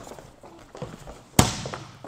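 One sharp smack of a volleyball about one and a half seconds in, ringing briefly in the large gym hall, with a few faint taps before it.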